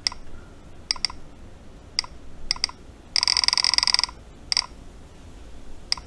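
A string of sharp, short clicks, several in quick pairs like a button pressed and released, with a dense buzzing rattle lasting about a second midway through.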